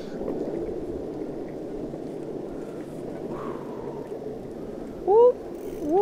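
Steady rushing noise of a bicycle rolling along a paved path, tyres and moving air. About five seconds in, a short rising vocal sound from one of the riders.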